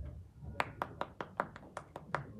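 Light hand clapping from one or a few people: a regular run of sharp claps, about five a second, starting about half a second in.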